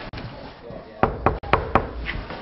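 Knocking: a quick run of about five sharp knocks, starting about a second in.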